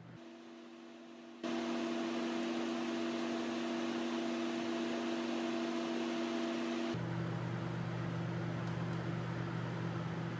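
Laminar flow hood blower running: a steady rush of air with a motor hum. It jumps abruptly louder about a second and a half in, and about seven seconds in the hum shifts to a lower pitch.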